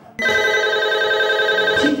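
Brain Ring quiz system's signal: one steady electronic tone lasting about a second and a half that cuts off sharply, sounding when a team presses its button first and wins the right to answer.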